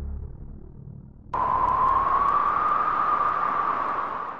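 Background music fading out, then a sudden loud electronic hiss with a steady whistling tone that rises slightly in pitch, coming in about a second in and running to the end.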